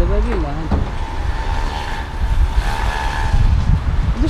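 A car engine running steadily, with a low rumble of wind on the microphone and a single click about a second in.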